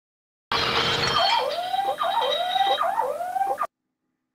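Cartoon sound effects from an animated film: a short burst of noise, then a rising whooping tone repeated about five times, which cuts off suddenly near the end.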